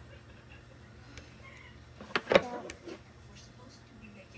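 Duct tape being pulled or peeled apart: one short, loud rip with a squealing tone about halfway through, lasting under a second.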